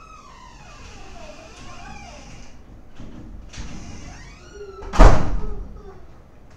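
A single loud bang about five seconds in, fading over about half a second, over faint background sounds.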